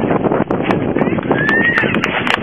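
A crowd applauding and cheering, with a brief whistle about one and a half seconds in.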